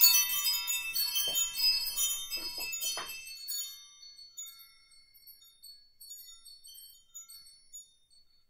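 Chimes ringing: a cluster of many high, tinkling bell-like tones, dense for about the first three seconds, then thinning out to a few scattered notes that fade away.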